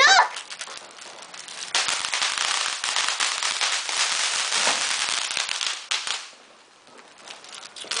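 Plastic wrapper of a graham-cracker sleeve crinkling, close up: a dense run of fine crackles lasting about four and a half seconds, then stopping.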